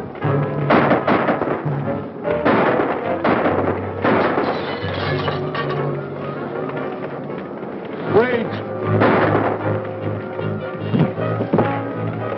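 Gunshots of a night gunfight, about ten at uneven intervals, the loudest about eight seconds in, over dramatic background music with low held notes.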